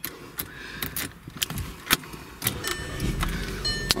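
Keys jangling and clicking in the ignition, then the 2012 Volkswagen Eos's 2.0-litre turbocharged four-cylinder engine starts about three seconds in and fires right to life, settling into a steady idle, with a brief high tone as it starts.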